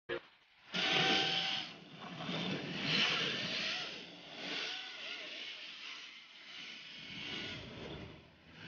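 1/10-scale RWD RC drift cars sliding past on the track, their tyres and motors hissing in swells that rise and fall every couple of seconds, loudest about a second in and again about three seconds in. Faint voices can be heard underneath.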